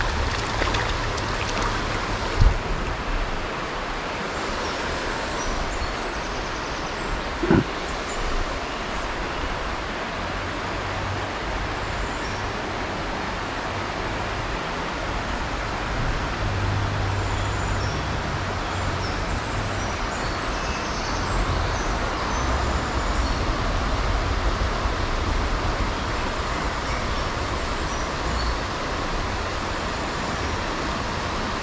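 Steady rushing of river water flowing over a riffle, with a low rumble underneath and two brief knocks, about two and a half and seven and a half seconds in.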